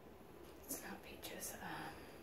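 A person whispering a few soft words, with hissing s-sounds, about a second long near the middle.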